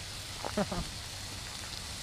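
Steady sizzling hiss of food frying in a skillet over a campfire, with the fire's crackle. A brief faint vocal sound about half a second in.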